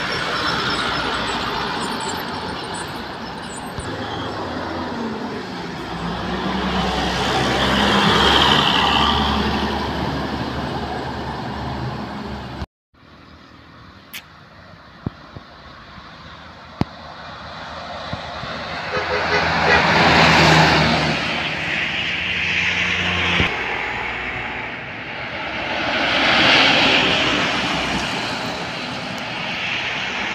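Heavy trucks and a bus passing by on a road, their engine drone and tyre noise swelling and fading with each pass; three passes peak, about 8, 20 and 26 seconds in. The sound drops out abruptly at a cut just before halfway, then builds again.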